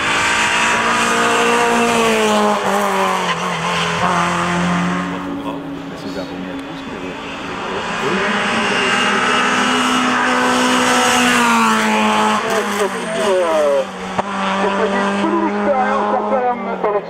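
Renault Clio 2 RS's 2.0-litre four-cylinder engine revving hard as it climbs the hill, its pitch stepping down at each upshift. It quietens for a few seconds near the middle, climbs in pitch again, and gives short choppy lifts and blips near the end.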